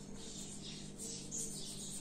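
Pencil lead scratching across paper in a run of short drawing strokes, over a steady low hum.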